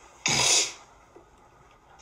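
One short, sudden burst of breath from a person, about a quarter second in and lasting about half a second, hissy rather than voiced.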